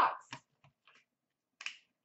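A few faint ticks, then one brief sharp tick about one and a half seconds in, as a cardboard hockey card hobby box is handled.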